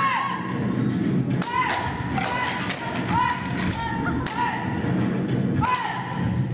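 Children's martial-arts kiai shouts, short and sharp, repeated about once a second, with thuds and cracks of wooden breaking boards being struck, over background music.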